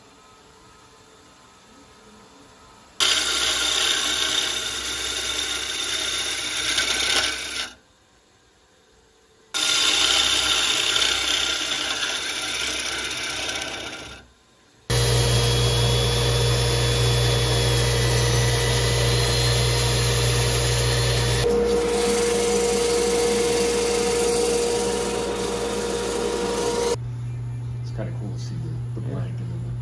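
Wood lathe spinning a sapele bowl blank while a bowl gouge cuts into it, a loud rasping hiss of the tool on wood over the lathe's running. It comes in three stretches that start and stop abruptly; the longest, last one has a strong steady motor hum beneath the cutting.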